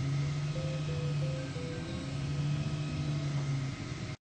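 3D printer's stepper motors whining in steady tones that jump from pitch to pitch as the print head changes speed and direction while printing face-shield headbands.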